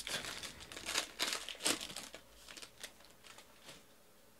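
Wrapper of a 2018 Panini Origins football card pack torn open and crinkled by hand, a dense run of crackling in the first couple of seconds that thins to a few scattered crinkles.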